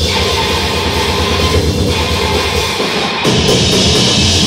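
A grindcore band playing live, with loud distorted guitars and drum kit. The playing drops out briefly about three seconds in, then comes back in.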